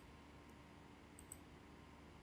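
Near silence with a few faint computer mouse clicks, two of them in quick succession a little past the middle.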